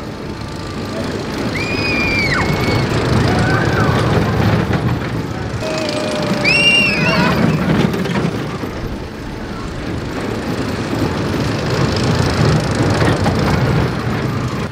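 Small family roller coaster train running along its track with a steady rolling noise, while riders scream and yell several times, loudest about six to seven seconds in.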